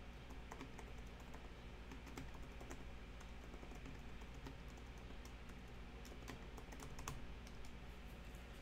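Computer keyboard typing: quick, irregular key clicks, fairly faint, over a low steady hum.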